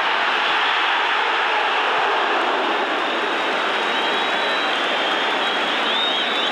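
Football stadium crowd, a loud steady wash of massed voices with no single voice standing out; thin high whistle tones come in near the end.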